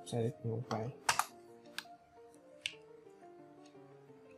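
Computer keyboard and mouse clicks: four sharp single clicks about a second apart, the first the loudest, over soft background music.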